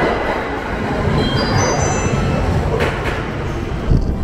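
Electric commuter train running into a station platform: a steady rumble and rail noise, with background music under it.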